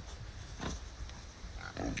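Ossabaw Island pigs grunting, a few faint short grunts.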